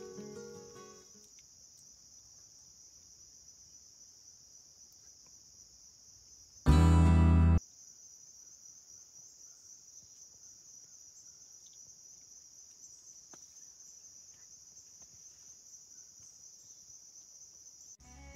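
Steady, high-pitched insect chorus, with crickets tagged, in summer woodland. About seven seconds in, a sudden loud noise lasts just under a second.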